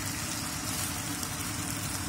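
Kailan (Chinese broccoli) and sliced beef sizzling steadily in a hot frying pan over high heat while being stirred.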